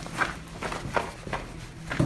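Footsteps on loose rock and gravel, about three steps a second.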